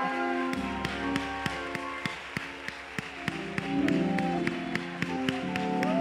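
Church music comes in about half a second in: sustained keyboard chords with a steady beat of sharp taps, about three a second.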